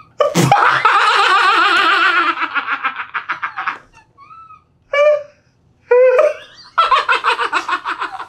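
Two men laughing hard in long bursts of belly laughter with quick pulsing breaths. The laughter breaks off for a moment around four seconds in and surges again near the end. A single sharp smack comes about half a second in.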